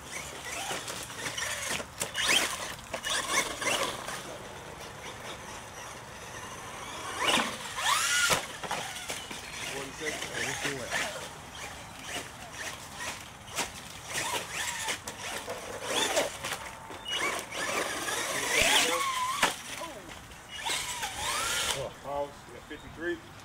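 Electric R/C monster truck motors whining, rising and falling in pitch as the throttle is worked, over a background of spectators' voices.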